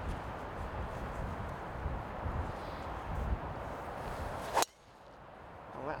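A golf driver striking a teed ball: one sharp crack about four and a half seconds in, from a cleanly struck drive.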